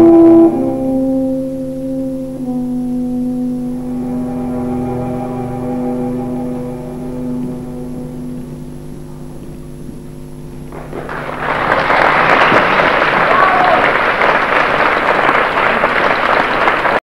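Opera orchestra holding the final soft chords at the end of the aria, the notes shifting twice early on and then fading. About eleven seconds in, the audience starts applauding loudly and keeps on.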